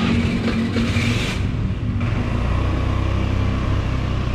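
Small motor scooter engine idling steadily, with a rushing hiss over it for the first second or so.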